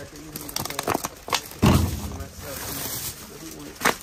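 Plastic produce bags crinkling and rustling as a gloved hand digs through bagged fruit, in a few sharp rustles with one loud crunch of plastic about one and a half seconds in. A voice murmurs in the background partway through.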